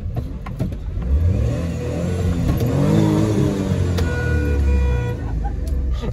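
Maruti Suzuki WagonR's small three-cylinder petrol engine heard from inside the cabin, revving up hard as the car launches from a standstill. The revs climb to a peak about halfway through, then drop and hold lower.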